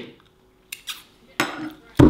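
A spoon clinking lightly against a glass measuring jug of dry oats, a few short clicks about a second in, then a dull thump near the end.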